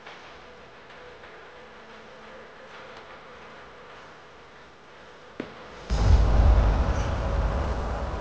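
Faint steady drone of night insects over an open-air background. About five and a half seconds in there is a single click, then a loud, low rumbling noise that lasts to the end.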